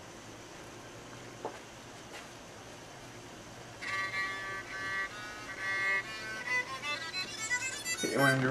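Baseball bat electric violin being bowed: after a quiet stretch, a series of bowed notes begins about four seconds in and moves through several pitches.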